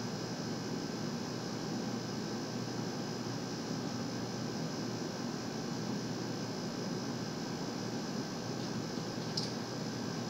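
Steady hiss and low hum of a running fan, unchanging throughout, with no distinct events.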